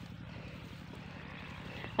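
Steady low drone of a distant engine under a faint hiss.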